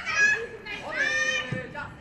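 Women footballers calling out to each other during training: two high-pitched shouts, the second longer and held.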